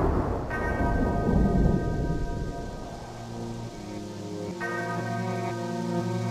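Rolling thunder fading out over a hiss of rain, with a music track's sustained chords coming in about half a second in and changing about two-thirds of the way through.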